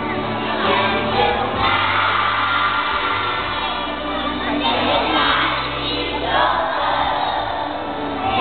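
A large group of young children singing a song together with hand motions, over backing music with a steady low beat played on loudspeakers.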